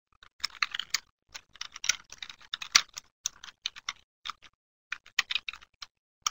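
Typing on a computer keyboard: a quick, irregular run of key clicks with a short pause near the end.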